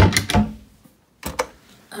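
Wooden cabinet doors and drawers being handled, a clatter of knocks and rattles at first, then two sharp knocks about a second and a quarter in.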